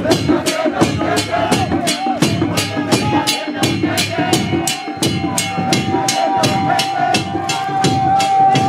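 A procession of worshippers singing a hymn together to a steady percussion beat of about three strikes a second. A long high note is held through the second half.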